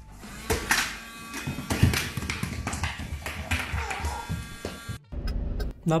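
A small electric motor buzzing steadily, with irregular knocks and clattering over it; it cuts off abruptly about five seconds in.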